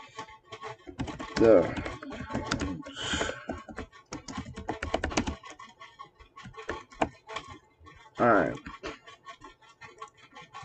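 Computer keyboard being typed on in irregular runs of clicks, with a person's voice briefly sounding about a second and a half in and again near the end.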